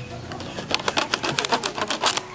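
A knife sawing and scraping at a plastic packing strap on a cardboard box: a quick run of short scratchy clicks starting about half a second in.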